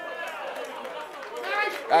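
Speech only: several voices calling out overlapping responses, fainter than the preaching around them, swelling into a louder call near the end.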